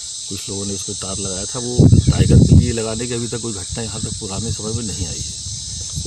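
Steady high-pitched chorus of insects, with a man speaking over it.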